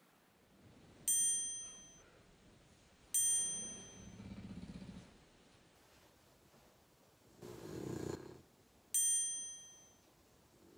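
A bright bell-like chime sound effect dings three times, the same sample each time: about a second in, again about two seconds later, and once more near the end, each ringing out and fading over about a second. Softer low sounds come between the chimes.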